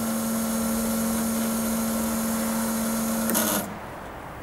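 Honda S2000 fuel injectors running on an injector test bench during a flow test, spraying test fluid into graduated measuring cylinders with a steady buzzing hum and hiss. The machine cuts off about three and a half seconds in.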